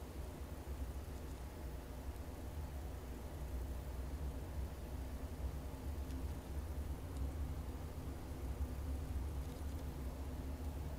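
Steady low rumble with a faint hiss underneath, with no distinct clicks or other events.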